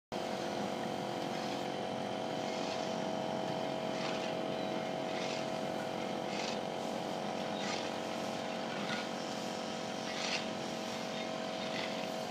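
Drive motor of a Jianxing 670B stainless-steel retractable folding gate running with a steady hum as the gate extends, with faint clicks about once every second and a bit from the moving gate.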